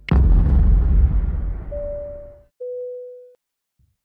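An edited deep boom hit that ends the music, its low rumble fading over about two and a half seconds, followed by two short steady electronic beeps, the second lower in pitch and louder.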